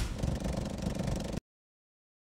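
Logo-sting sound effect: a rough, rattly low rumble that cuts off suddenly about a second and a half in.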